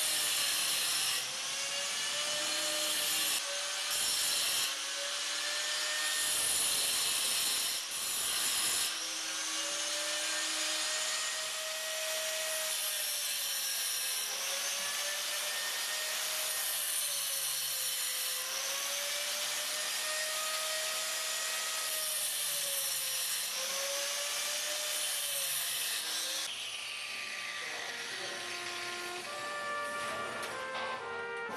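Angle grinder grinding iron scrollwork, its motor pitch dipping and rising again and again as the disc is pressed into the metal and eased off. The grinding stops near the end.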